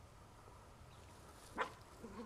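A Yorkshire terrier gives a single short, sharp bark about one and a half seconds in, over faint background noise.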